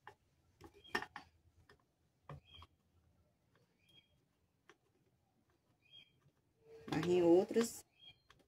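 Sparse faint clicks and creaks of a metal screw being turned by hand through the plastic bottom of a bucket. Two faint chirps about 4 and 6 seconds in, and a woman's voice briefly about 7 seconds in.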